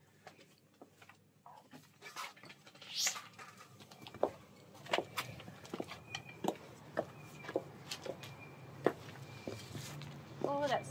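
High-heel footsteps from six-inch Pleaser KISS-201 mules: a steady series of sharp heel clicks, starting a few seconds in.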